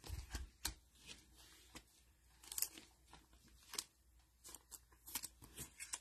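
Donruss Optic football trading cards being flipped through in gloved hands: faint, scattered clicks and snaps of stiff card stock, with a quick run of them near the end.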